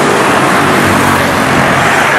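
Road traffic noise: cars and motorcycles passing close by, a loud steady rush of tyres and engines.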